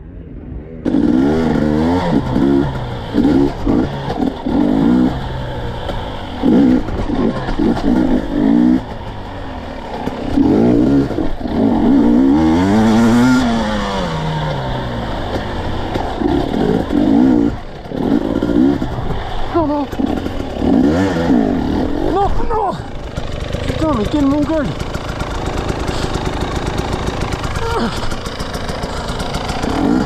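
KTM 250 EXC two-stroke dirt bike engine at low speed, its revs rising and falling over and over in short throttle blips as it picks through slow, technical ground.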